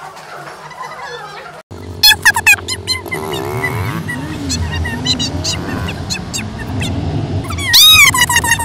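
A small child's high-pitched squeals of laughter inside a moving car, over a steady road rumble. The loudest shrieks come in a quick burst about two seconds in and again near the end.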